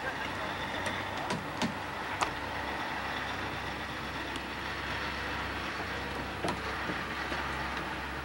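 Construction-site ambience: a heavy truck engine running steadily, with a few short, sharp knocks.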